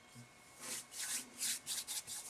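Hands rubbed briskly together, skin on skin, in about five quick strokes starting about half a second in.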